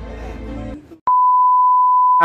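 Background sound cuts off suddenly just before halfway. After a click, a single steady high-pitched test-card beep starts: the reference tone played with TV colour bars.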